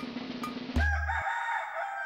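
Rooster crowing, one long wavering call starting just under a second in, over a drumbeat of background music that gives way to it with a bass hit.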